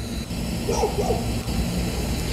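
Outdoor background sound: a steady low rumble and hum, with faint distant voices about a second in.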